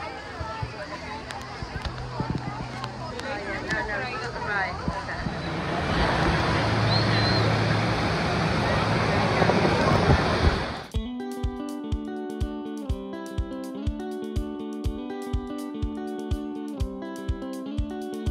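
Crowd chatter and rushing water from the waterfalls of a large man-made volcano over a wave pool, the water noise growing louder about five seconds in. About eleven seconds in it cuts off and background music takes over, with plucked guitar and a steady beat.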